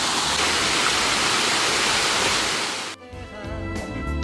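Water rushing steadily down a small stepped waterfall. About three seconds in, the water sound cuts off suddenly and background music begins.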